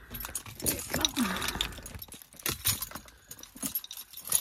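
Small clicks and rattles of objects being handled, with a brief low hum of a voice about a second in.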